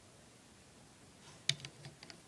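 Quiet room tone, then a sharp click about one and a half seconds in followed by a few smaller plastic clicks, as a Lego minifigure's ninja mask is pulled off its head.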